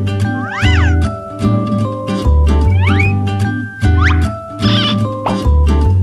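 Upbeat intro jingle with a pulsing bass line and held notes, with several short cat meows that rise and fall in pitch laid over it as sound effects.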